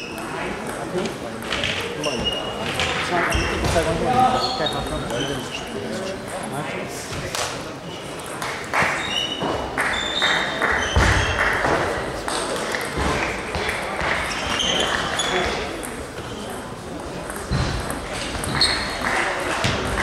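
Indistinct voices echoing in a large sports hall, with scattered sharp clicks and high pings of table tennis balls bouncing on tables and bats.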